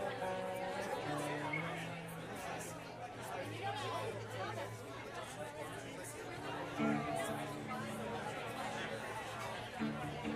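Crowd chatter between songs in a large room, many voices talking at once, with a few long, low held notes from an instrument underneath.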